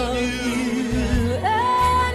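A song: a singing voice holds long notes with vibrato over a bass accompaniment, rising to a higher held note about halfway through.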